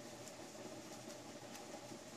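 Quiet room tone with two faint ticks as round-nose pliers bend the end of a titanium ring wire into a small hook.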